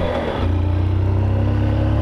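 Motorcycle engine running steadily while riding on the road, with a brief dip in the engine note near the start before it settles back to an even pitch.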